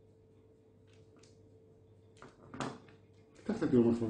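Knife work on cookie dough over a steady low hum: a few faint ticks of the blade scoring the dough on baking paper, and a short clack about two and a half seconds in as the knife is laid down on the plastic cutting board. A man's voice starts near the end.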